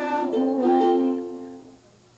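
A young girl singing, holding a note that dies away shortly before the end.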